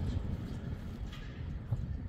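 Low, uneven rumble of wind on the microphone, with a few faint clicks from the buttons of a Garmin Tactix 7 Pro watch being pressed.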